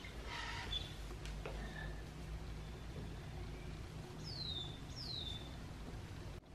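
Two short, high bird calls about four seconds in, each a quick downward whistle, less than a second apart. They sit over a quiet background with a brief rustle near the start.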